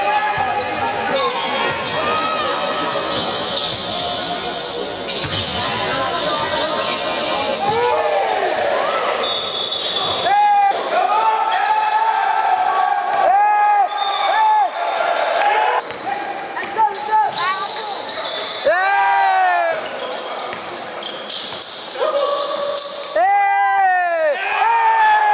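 Live basketball game sound on a hardwood court: sneakers squeaking in short rising-and-falling chirps, the ball bouncing, and a referee's whistle blown once for about a second around nine seconds in, with voices in the gym.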